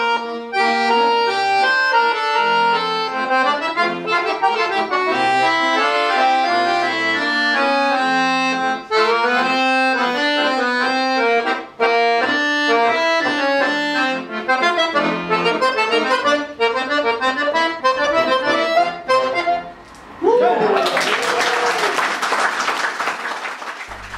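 Two piano accordions playing a milonga as a duet, melody over chords. The piece ends about twenty seconds in, and applause follows.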